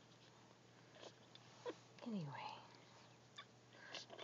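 Very quiet nursing sounds from a week-old litter of Chinese Crested puppies suckling on their mother: a few faint small clicks.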